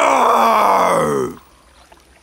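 Cartoon dinosaur's roar: one long voiced cry that slides down in pitch and stops about a second and a quarter in, meant to frighten.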